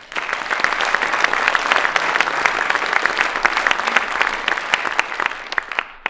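Audience applauding: a dense mass of clapping that starts suddenly and thins out near the end.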